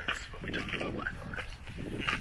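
A dog whining in short, high, wavering whimpers.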